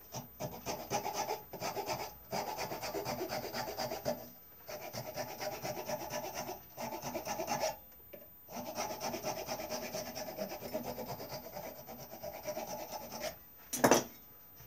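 Hand file rasping across a wooden stick held in a bench vice: rapid back-and-forth strokes in runs of about two seconds, with short pauses between. A single loud clunk near the end as the vice handle is turned.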